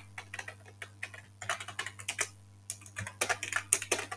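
Typing on a computer keyboard: quick key clicks in irregular runs, denser in the second half and stopping right at the end.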